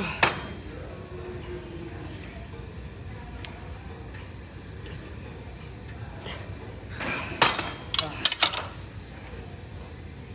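Metal clanking from a leg extension machine's weight stack as the set ends: one sharp clank right at the start, then a quick run of four or five clanks about seven to eight and a half seconds in.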